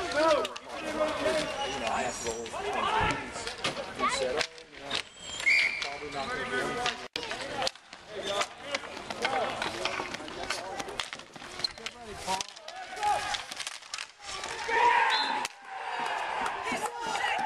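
Players' voices calling out across an outdoor street hockey game, with many short, sharp clacks of sticks and ball.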